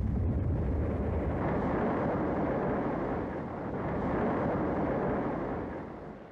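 A large explosion: it hits suddenly and goes on as a long, deep rumbling noise that holds steady for several seconds, then fades slightly near the end.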